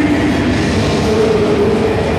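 Live metal band playing: distorted guitars and drums in a dense, continuous wall of sound, with a held note coming in about halfway through.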